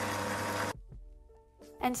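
Magimix food processor running, blending chickpeas into hummus, then cutting off abruptly under a second in. Faint music follows.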